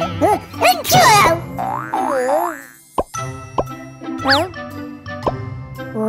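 Playful background music under cartoon sound effects: squeaky gibberish character voices that swoop up and down in pitch, with a few sharp clicks and a quick rising whistle-like glide about four seconds in.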